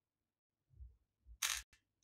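Brief handling of plastic craft beads: a few soft knocks, then a short clattering rustle and a click about one and a half seconds in as fingers pick through a compartment bead tray.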